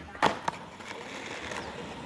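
Skateboard coming off a wooden ledge box onto concrete at the end of a tailslide: a sharp clack as it lands about a quarter second in, a lighter knock just after, then the wheels rolling on concrete.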